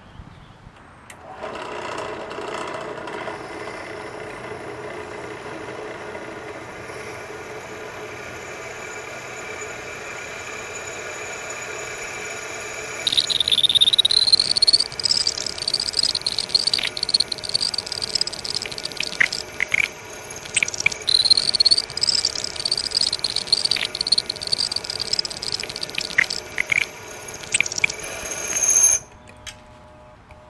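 Drill press running with a stepped cobalt bit drilling into half-inch AR500 hardened steel plate; the motor starts about a second in. From about halfway through, the bit cutting the hardened steel gives a loud, high, wavering squeal that stutters on and off, until the press stops shortly before the end.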